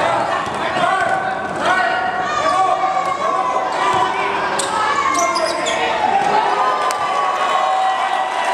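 A basketball bouncing on the court during play, with indistinct voices of players and spectators in a large gym hall.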